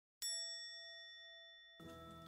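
A single bright bell-like ding, an editing sound effect, rings out suddenly and fades over about a second and a half. Background music starts just before the end.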